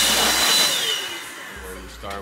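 Handheld hair blow dryer blowing loudly with a high whine. About a second in, it winds down, the whine dropping in pitch as it fades.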